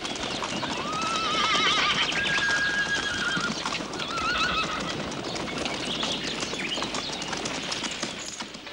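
A herd of horses galloping past, a dense, continuous clatter of many hooves on dry ground, with a few wavering whinnies in the first half.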